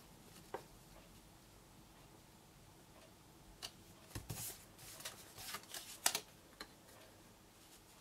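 Cardstock pieces being slid, tapped and pressed down on a craft mat: a few soft rustles and light taps in the second half, after a few quiet seconds.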